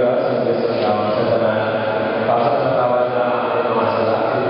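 Voices chanting a prayer in a steady, held intonation, the notes sustained and moving in small steps without breaks.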